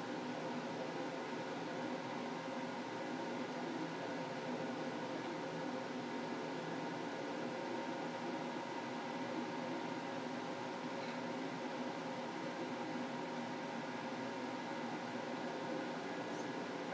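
Steady machine hum and hiss with several constant tones, like a running fan or appliance motor, unchanging throughout.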